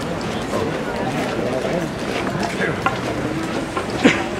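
A crowd of many people talking at once: steady, indistinct chatter with no one voice standing out.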